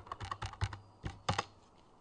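Computer keyboard being typed on: a quick run of keystrokes over about the first second and a half, then it stops.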